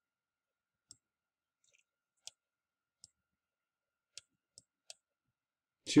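Faint, short clicks, about six spread over the few seconds, from the input device as numbers are handwritten onto an on-screen document.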